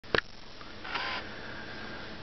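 A single sharp click just after the start, typical of a camcorder beginning to record, then faint steady background hum with a brief soft rush of noise about a second in.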